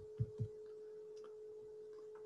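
Calculator keys being pressed: a few quick, dull taps in the first half second, over a steady faint hum.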